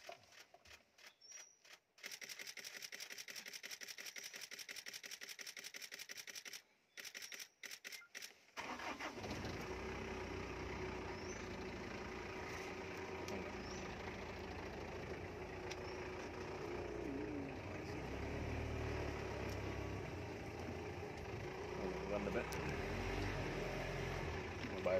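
A camera shutter firing in a rapid continuous burst for several seconds, with a short break near the middle. About eight or nine seconds in, a safari jeep's engine starts and keeps running as the jeep reverses, growing somewhat louder near the end.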